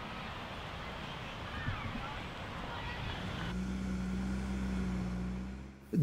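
Open-air ambience with faint distant voices. About halfway through it gives way abruptly to a steady low engine hum, which stops just before the end.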